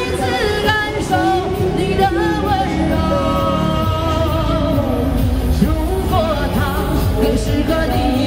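A woman singing a Cantonese pop ballad into a handheld microphone, amplified, over instrumental accompaniment; she holds long notes with a light vibrato.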